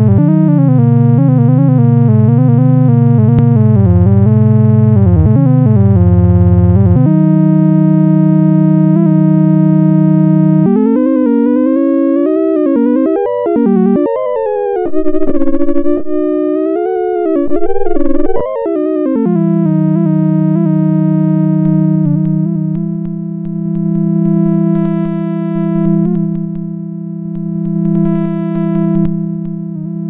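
Electronic oscillator tone from a Pure Data synthesizer patch, its pitch steered by hand over a photoresistor read by an Arduino. The pitch wavers at first, holds steady, then glides up and down, before settling on a steady low note whose loudness and brightness swell and fade slowly.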